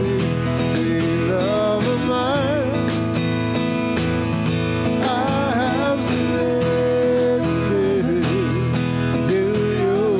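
Live worship song: acoustic guitar strummed in a steady rhythm under voices singing a melody with vibrato and melismatic runs.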